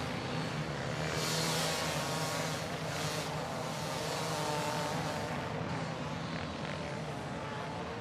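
Hard enduro dirt bike engines running at high revs, a steady drone.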